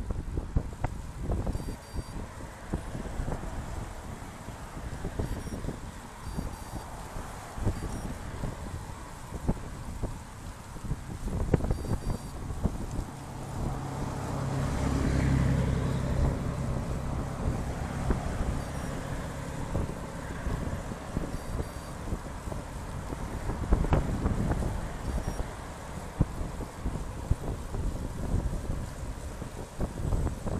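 Wind buffeting the microphone of a handlebar-mounted bike camera as a road bike rolls along, with frequent short knocks from the bike jolting over cracked asphalt. About midway a motor vehicle passes close, its engine and tyre noise swelling and fading over a few seconds.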